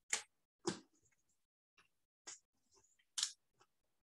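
A sheet of paper being folded and pressed along the crease with a plastic ruler: four short, faint rustles.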